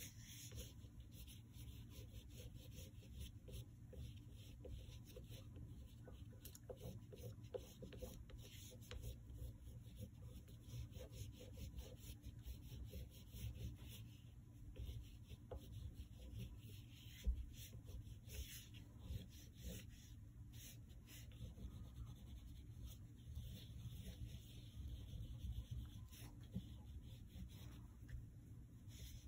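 Black oil pastel stick scratching and rubbing across paper in many short, quick strokes, faint throughout. A single low thump comes about two-thirds of the way through.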